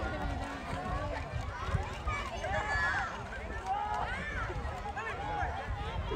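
Many voices shouting and calling over each other from the spectators and players at the pitch, with no single voice clear, over a low uneven rumble.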